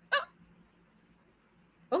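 A woman's short exclamation, "Oh," then a pause of faint room tone and microphone hiss until she speaks again near the end.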